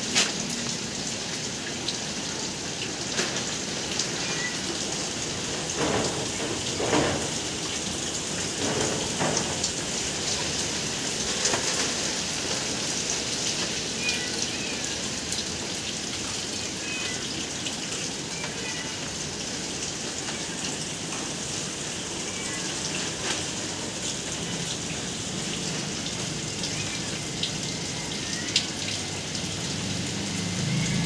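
Steady rain from a tropical depression falling on garden foliage, with many scattered louder drips and splashes close by.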